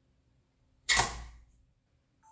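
A steel ball snapping onto the magnet of a magnetic cannon: one sharp metallic clack about a second in, ringing briefly as it fades.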